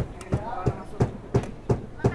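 Repeated sharp knocks at a steady pace, about three a second, with a voice talking quietly underneath.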